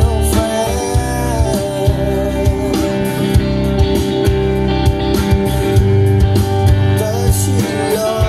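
Live rock band playing through a PA: electric guitars over a drum kit keeping a steady beat, with some sung vocals.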